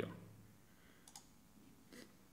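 A couple of faint clicks about a second in, and another near the end, from someone working a computer, over quiet room tone.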